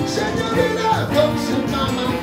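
Rock band music with keyboard, saxophone and a male singer, played at a steady, loud level.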